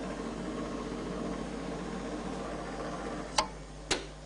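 Steady fan noise from a small smoke wind tunnel running during a flow demonstration, with two short clicks near the end.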